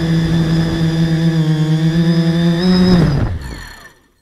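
Brushless motors and propellers of a 300-size mini tricopter, heard from its onboard camera, running with a steady high whine. The pitch lifts slightly just before three seconds in, then the motors spin down quickly and stop as the craft comes down in the grass.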